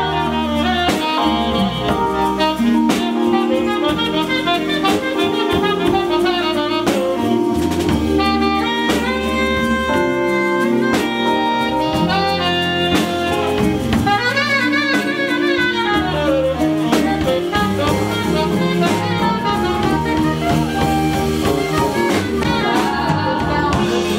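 Saxophone solo of fast, winding runs over a live jazz band backing of drums, bass and hand percussion.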